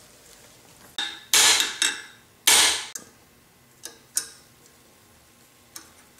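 Metal-on-metal knocks as the sleeve is knocked against the cast-iron cross-shaft housing, so the pointed drill rod inside marks where to drill the clearance holes. There are four strikes in quick succession, the second and fourth loudest with a short ring, then a few lighter taps.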